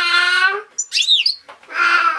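A baby making long, drawn-out wailing cries, one ending just before a second and another starting near the end, with a short, high, rising-and-falling finch chirp between them about a second in.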